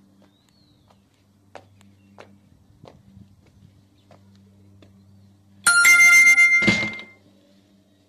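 A short, loud ringing chime of several bell-like tones lasting just over a second, starting near the end, over a faint low hum with a few light clicks.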